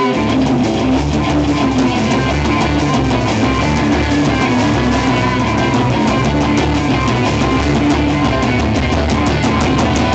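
Live rock band playing loud without vocals: two electric guitars with bass guitar and drum kit, the bass and drums coming in hard right at the start over the guitars, with cymbals crashing steadily.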